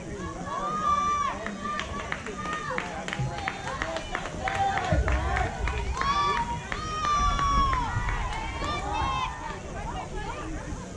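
Several young players' voices shouting and calling out across the field, overlapping, with high-pitched drawn-out calls.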